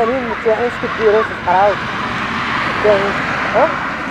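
A car driving past on the road, its engine and tyre noise swelling in the middle and then easing off, under people's talking voices.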